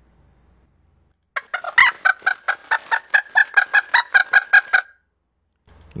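Recording of a hen clucking, played back after being pitch-shifted up seven semitones in Audacity: a quick, even run of about twenty clucks, some five or six a second, starting about a second and a half in and stopping just before the end.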